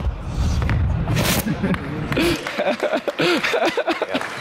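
Low rumble of a Jeep being driven, heard from inside the cabin on a demo video played over a hall's speakers; it cuts off abruptly about two and a half seconds in. Laughter and talk run over the second half.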